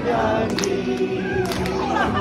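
A group of women singing together, clapping along in time about once a second.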